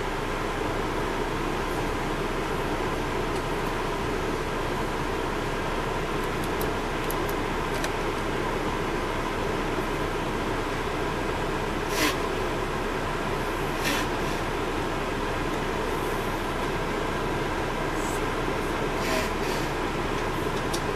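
Steady cabin drone inside a 2002 MCI D4000 transit coach, its Detroit Diesel Series 60 engine running. Two short sharp clicks come about twelve seconds in and again two seconds later.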